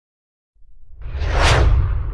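Whoosh sound effect over a deep rumble for an animated logo intro: it starts from silence about half a second in, swells to a peak about a second and a half in, then eases off.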